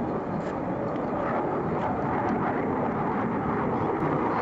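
General Dynamics F-16A Fighting Falcon's single jet engine in flight, passing low: a steady, dense rushing noise that grows slightly louder about a second in.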